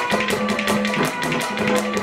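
Instrumental interlude of a live Haryanvi ragni: a harmonium holds steady notes while a hand drum keeps a quick, even beat of about five strokes a second.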